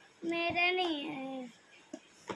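A child's voice singing one drawn-out note for about a second, dropping in pitch as it ends.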